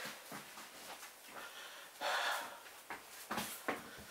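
A person breathing close to the microphone, with a noisy exhale about two seconds in, and a few short knocks from handling near the end.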